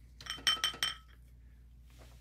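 About four quick, bright clinks in the first second, each ringing briefly at the same high pitches, as of a small hard glass or metal object being struck.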